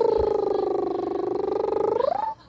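Baby making a long, drawn-out vocal sound: one steady, wavering tone that sinks a little in pitch and rises as it ends.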